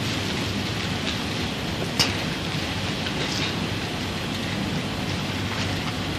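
Steady, even hiss-like background noise with one sharp click about two seconds in.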